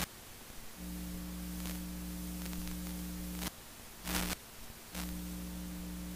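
Steady electrical mains hum over a background hiss, cutting out for most of the first second and again from about three and a half to five seconds in, with a sharp crackle right at the start and another about four seconds in.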